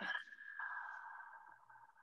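A faint two-note chime: a high tone sounds at once, a lower tone joins about half a second in, and both hold and fade away.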